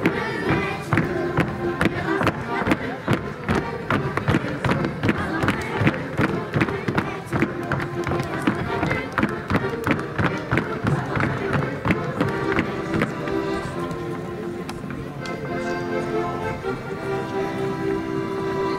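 Folk dance music with the dancers' feet stepping and stamping on the stage boards, many sharp steps a second through most of the stretch. In the last few seconds the steps thin out and the music's held tones come to the fore.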